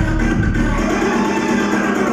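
Dance-routine music played loud over the hall's sound system; the deep bass drops away about a second in, leaving the higher parts of the track.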